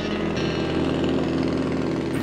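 Light bush plane's piston engine running steadily, a low even drone.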